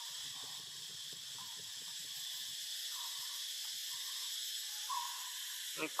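Steady high-pitched drone of forest insects, with no pauses or changes.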